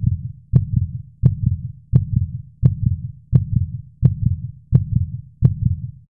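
Heartbeat sound effect: a steady pulse of about nine beats, one every 0.7 seconds. Each beat is a sharp click followed by a low double thump.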